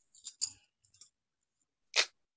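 A few faint, short clicks in the first second, then one brief sharper click near the end.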